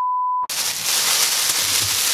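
A short, steady, high beep lasting about half a second, then loud crinkling and rustling of a clear plastic cap being pulled on over bleach-covered hair to keep it warm while the bleach processes.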